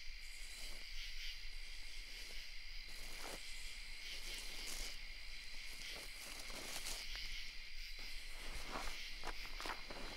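Steady chorus of crickets, with irregular soft rustling steps that come more often near the end.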